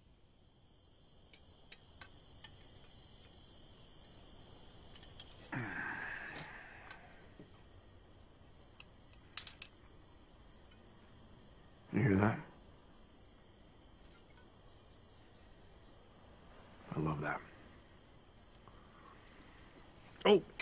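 Faint, steady chirring of crickets at night, with three short wordless sounds from a person's voice, the loudest about twelve seconds in.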